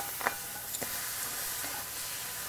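Sliced mushrooms sizzling in a stainless steel skillet as they brown, with a few light clicks and scrapes from a silicone spatula stirring them, mostly in the first second.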